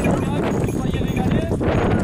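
Many voices talking at once, with the hooves of a line of Camargue horses shifting on dry ground.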